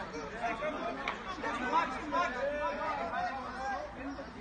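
Several people talking at once: the overlapping chatter of a group of voices, with no single speaker standing out.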